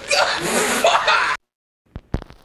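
A man's breathy, laughing outburst that cuts off abruptly about one and a half seconds in, followed by a single click near the end.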